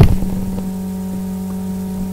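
Steady electrical mains hum, an even low buzz with a few higher overtones, unchanging throughout.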